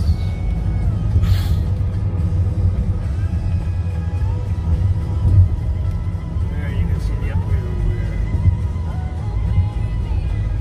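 Steady low road and engine rumble heard inside a moving car's cabin, with music and voices playing faintly over it.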